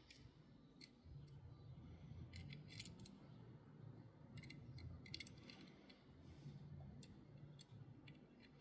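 Faint small clicks and scrapes of a precision screwdriver turning a tiny screw in the metal base of a diecast Datsun 510 wagon, coming in short scattered clusters.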